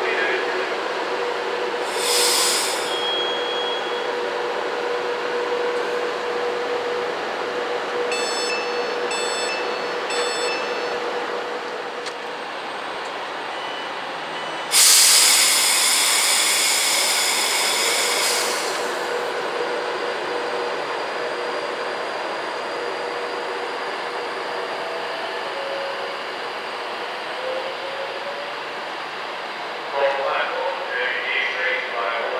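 Virgin Trains Class 390 Pendolino electric train standing at a platform and pulling out, with a steady electrical hum throughout. A brief hiss comes about 2 s in and four evenly spaced door-warning beeps around 8 to 11 s. The loudest sound is a burst of hissing compressed air, lasting about four seconds from halfway through, as the train sets off.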